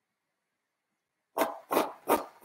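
A dog barking: after a silent first second, two quick sharp barks about a third of a second apart, the start of a short run of barks.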